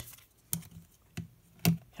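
Clear hard plastic trading-card cases clicking against each other and against fingers as they are handled: three sharp clicks, the last the loudest.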